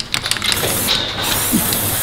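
Hand-held spray bottle spraying a dairy cow's hoof: a few short squirts, then a longer steady hiss from about half a second in until near the end. It is a treatment for digital dermatitis on the foot.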